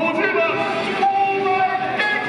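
Stadium public-address sound echoing around the stands: a few held tones, with a longer steady one starting about a second in.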